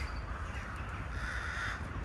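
A crow cawing: one harsh call a little past a second in, over a steady low rumble.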